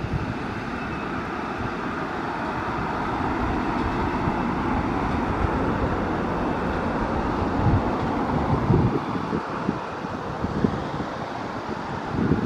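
Steady, distant rumble of electric commuter trains running, heard with other urban noise and wind buffeting the microphone in low gusts about two-thirds of the way through.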